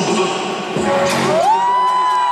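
Music playing in a large hall with a crowd cheering around a dance battle; about one and a half seconds in, a long high note slides up and is held.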